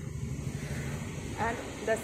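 Steady low outdoor rumble, then a woman's voice starting near the end.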